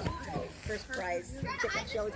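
Overlapping voices of children and adults talking and calling out, with high-pitched children's voices.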